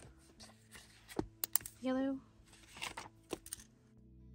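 Handling noise of paper and plastic on a tabletop: a few sharp clicks and taps with soft rustling between them, and one word spoken about halfway through.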